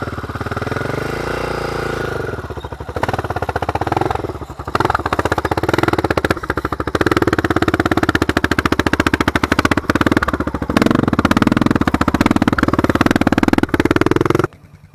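Quad (ATV) engine running close by, its pitch rising and falling as it is revved during the first few seconds, then running steadier and louder from about seven seconds in.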